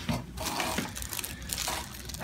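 Soft rustling and crinkling of hands moving through hair and against the paper-covered headrest of a chiropractic table.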